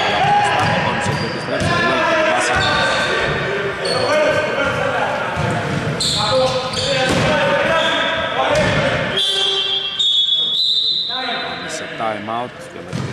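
A basketball bouncing on a hardwood gym floor during play, with voices calling out over it in an echoing hall.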